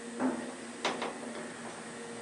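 Otis elevator in operation: a steady hum, with a dull clunk just after the start and two sharp clicks close together about a second in.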